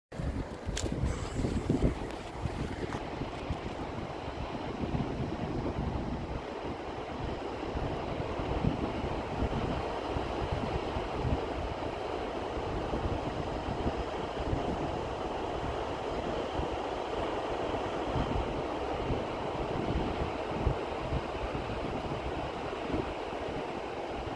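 Steady rushing of a waterfall pouring over its brink in winter, a dense, even wash of water noise. Wind buffets the microphone in low, uneven gusts underneath, strongest about two seconds in.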